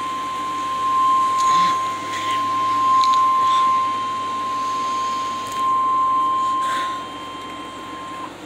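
Emergency Alert System attention signal: a single steady tone just above 1 kHz, played through a television's speaker into a room. It marks the start of a severe thunderstorm warning alert.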